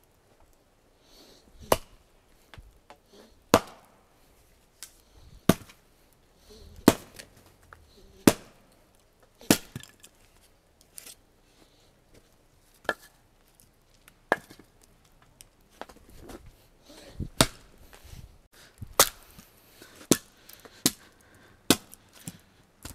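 An axe splitting firewood on a chopping stump: sharp wooden chops, one every second or two, about a dozen in all, coming faster near the end.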